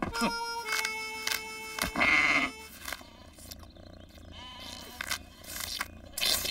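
A music score with a long held note over the first half, together with the bleats of cartoon sheep.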